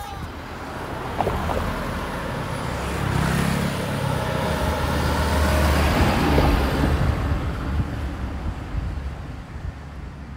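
A low rumble that swells to its loudest about six seconds in and then fades away, like a road vehicle passing.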